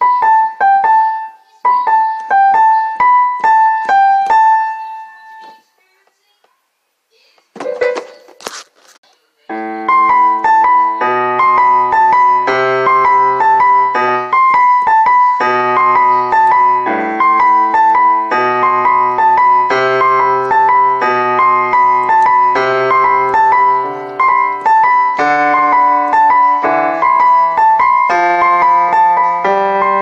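Piano playing: a short high melodic phrase repeated for about five seconds, a pause with a brief noise, then from about ten seconds a continuous piece with low bass notes and chords under a melody at a steady, even pace.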